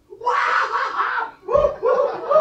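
A man screaming loudly: one long wavering scream, then a second scream starting about one and a half seconds in.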